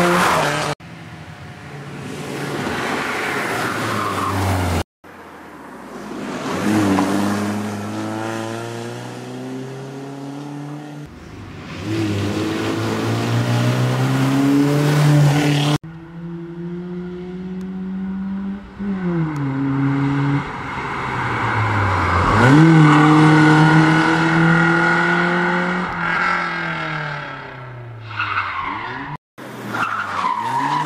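BMW E46 rally car at full throttle on a special stage: the engine's pitch climbs through each gear and drops at every upshift, with tyre squeal as it slides through corners. The sound comes in several separate runs that cut off suddenly.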